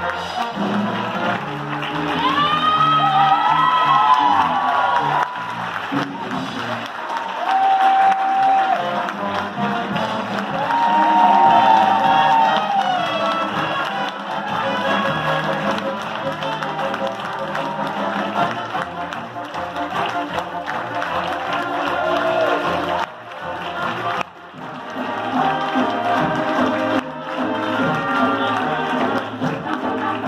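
A live stage band plays while the audience applauds and cheers, with crowd voices mixed in. Held notes stand out near the start and again around ten seconds in. The music drops briefly a little before the end, then comes back.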